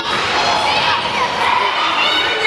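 Many children's voices shouting and cheering together in a large sports hall.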